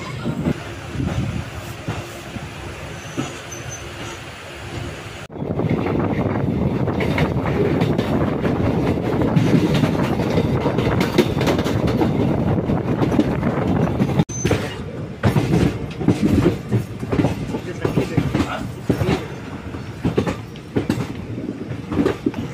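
Moving express passenger train heard from the coach doorway: the steady rumble of wheels on rails, with clickety-clack over the rail joints. It is quieter for the first five seconds or so, then suddenly louder, with sharp clicks from the wheels over joints in the second half.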